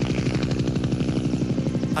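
Helicopter rotor blades beating in a fast, even pulse, with music underneath.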